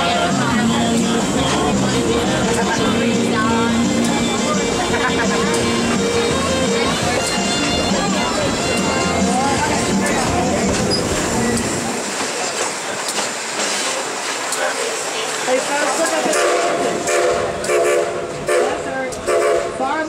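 Dollywood Express steam locomotive running with its train of open passenger cars, its rumble and rail noise constant throughout. Long steady tones sound over it, fitting the engine's steam whistle being blown.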